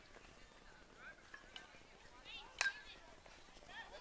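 Faint, distant voices of players and spectators calling out across a baseball field, with one sharp impact of the baseball about two and a half seconds in as a pitch arrives at the plate.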